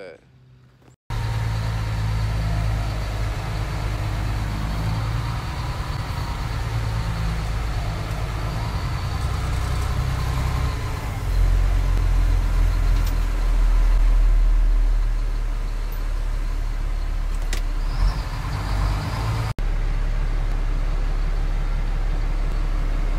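Heavy military truck's engine running steadily, heard from inside the cab while driving; it cuts in about a second in and grows louder for a few seconds in the middle before settling back.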